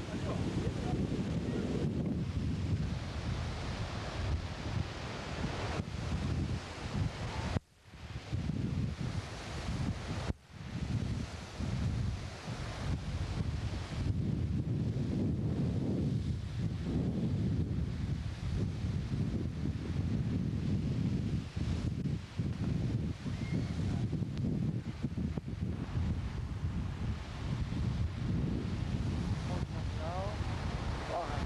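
Surf crashing and churning over a rocky shore, heavily mixed with wind buffeting the camcorder microphone as a low rumble. The sound cuts out briefly twice, about eight and ten seconds in.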